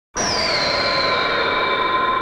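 A sustained electronic title-sting tone that starts abruptly. A high note slides down over the first half-second, over several steady notes that hold throughout.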